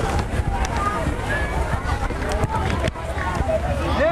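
Indistinct talk from several people close by, in short, overlapping bits, over a steady low rumble.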